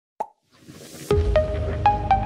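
Intro logo sound effect: a short plop, then a swelling whoosh that lands on a deep bass hit about a second in, followed by a few bright, ringing plucked notes as the music begins.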